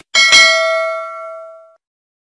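Notification-bell ding sound effect: two quick bright strikes, then a ringing tone that fades away within about a second and a half.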